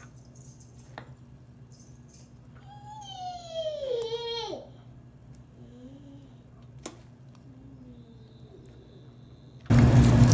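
Faint clinks of a spoon on a steel tray as rice is layered over chicken, over a steady low hum. About three seconds in, a high, voice-like call glides downward for over a second, and just before the end a loud, steady rush of noise starts abruptly.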